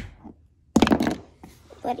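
Plastic toy horse knocked against a hardwood floor by hand: one tap at the start, then a quick clatter of knocks about a second in.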